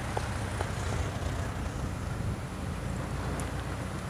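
Steady low rumble of road traffic heard from outdoors, swelling slightly about a second in.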